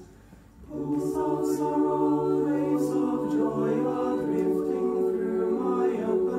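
Mixed choir singing a cappella: a held chord breaks off, and after a pause of about two-thirds of a second the voices come back in with sustained chords, with a few soft 's' sounds on the words.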